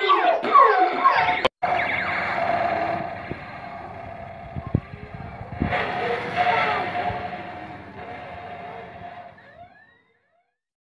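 Battery-powered toy robot playing its electronic siren-like sound effect as it walks: a warbling wail over a steady tone, with a couple of sharp clicks in the middle, fading out near the end. Children's voices are heard in the first second and a half.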